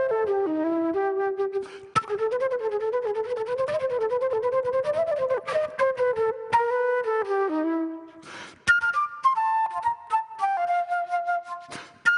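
A solo flute plays a melodic line that rises and falls, with quick breaths taken between phrases about two seconds in and again near eight and a half seconds.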